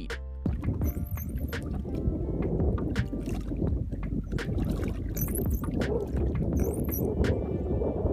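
Background music over a rough, uneven low rumble of outdoor noise from the water's edge, with a few short high chirping whistles.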